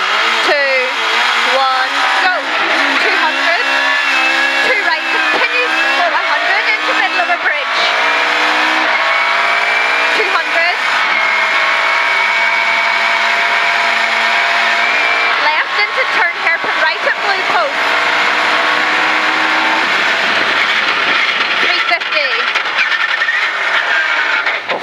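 Rally car engine at full throttle pulling away from a standing start, its note climbing and breaking again and again with quick upshifts through the gears, then holding a steady high note at speed, with a dip and pick-up about two-thirds through. Heard from inside the cockpit.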